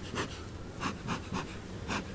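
Bee smoker's bellows being pumped in rapid, even puffs, about four a second, blowing smoke over the top of an open hive to drive the bees down out of the honey boxes.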